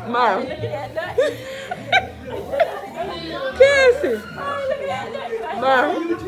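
Several people talking and laughing over background music in a room.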